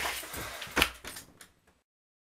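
Scuffling and knocking of a struggle at a desk, with one sharp loud knock a little under a second in, dying away before the sound cuts out.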